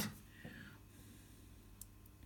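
Quiet workshop room tone with two faint clicks, one about half a second in and one near the end, as the milling machine spindle is turned by hand to swing the dial test indicator round the bar.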